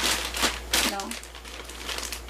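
White plastic shipping pouch crinkling as it is handled, in a few short rustles in the first second, then softer.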